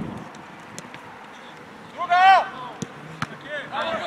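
Players shouting on a football pitch: one loud, high-pitched shout about two seconds in, and more shouting near the end. A few short sharp knocks are heard in between.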